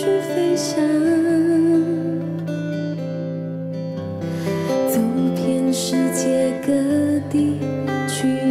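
A young woman singing a Mandarin ballad into a microphone, accompanied by strummed acoustic guitar.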